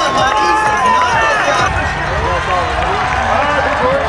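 Crowd of spectators shouting and cheering, many voices overlapping at once, with a deeper rumble joining abruptly about two seconds in.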